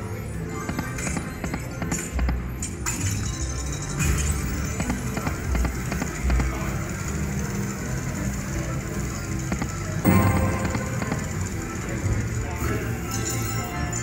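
Video slot machine playing its reel-spin music and sound effects over several spins in a row, over casino background noise with voices.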